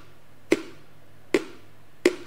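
Two short, sharp taps a little under a second apart, each with a brief ring. They mark the pace of word-by-word reading, one tap per word as the highlight moves along the sentence.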